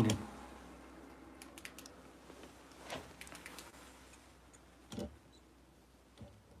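Faint scattered clicks and light taps, with a somewhat stronger knock about five seconds in, over a low steady background.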